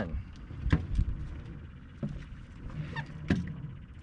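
Several short knocks and thumps on a small boat while a hooked fish is brought in over the side, the heaviest a low thud about a second in.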